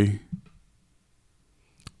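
A man's voice trails off, followed by a pause of quiet room tone broken by a few short clicks, the sharpest two just before he speaks again.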